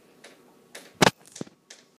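Handling noise: a few light clicks and knocks. The loudest is a sharp double knock about a second in, with a smaller click shortly after.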